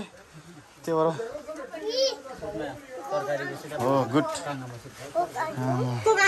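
Voices of several people, children among them, talking and calling out.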